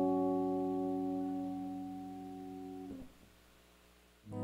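Electric guitar chord left ringing and slowly fading, then cut off abruptly about three seconds in, leaving near silence.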